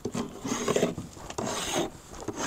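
Flat end of a steel hive tool scraping beeswax off the wooden top bars of a hive box, in several rasping strokes.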